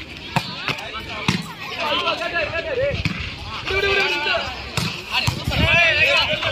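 Volleyball being struck by hand during a rally: a serve and several further sharp slaps of palm and forearm on the ball, with players' and spectators' voices shouting and calling over them.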